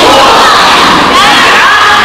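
A crowd of children shouting loudly together, many voices at once.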